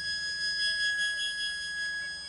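Blues harmonica holding one long, high note, steady in pitch.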